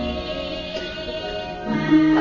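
Javanese court gamelan playing dance music: ringing bronze tones fade through the middle, and a new stroke sounds near the end with a fresh sustained note.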